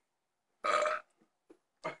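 A man's single loud burp, about half a second long, a little over half a second in, brought up by chugging chocolate milk.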